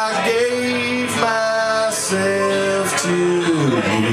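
Solo acoustic guitar played live on a slow country song, a run of about four held notes, each under a second, sliding down near the end.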